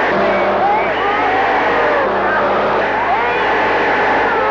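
A motor vehicle's engine running steadily under a noisy rush as it is pushed, with women's voices crying out in short, straining calls over it.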